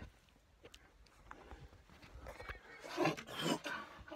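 Scattered light clicks and knocks from a phone being handled and moved about, then a short, louder burst of a person's voice about two to three seconds in.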